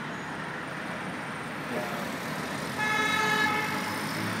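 Street traffic noise, with a car horn sounding once for under a second about three seconds in.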